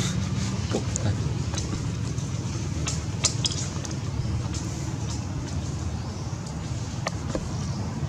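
Steady low outdoor rumble with a few light clicks scattered through it.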